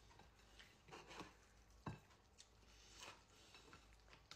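Near silence with a few faint clicks and soft handling sounds as fingers pick up and lay down cooked leafy greens on a plate of rice; one sharper click comes a little under two seconds in.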